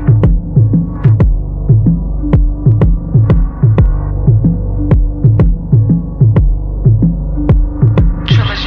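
Instrumental hip hop beat intro, muffled with the highs filtered out: deep bass notes that slide down in pitch, struck with a kick drum in a steady repeating rhythm.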